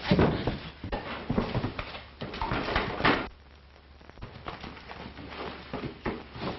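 A commotion of knocks, thumps and clatter that dies down about three seconds in.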